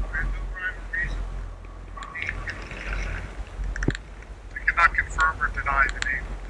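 Indistinct, muffled voices of people talking, with no words clear, over a low steady rumble. There is a sharp click about four seconds in.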